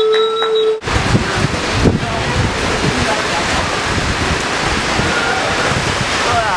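A steady held tone cuts off abruptly under a second in. Then wind buffeting the camcorder's microphone takes over as a loud, steady rumbling rush with gusts.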